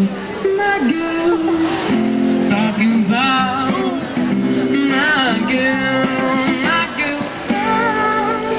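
A busker's live song: acoustic guitar playing chords under a male voice singing a melody into a microphone.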